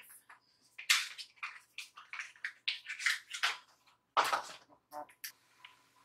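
A plastic makeup compact being handled: irregular light rustling and scraping, with a short click about five seconds in.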